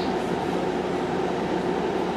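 A steady, even rumble and hum of background noise, with faint held tones and no break or change.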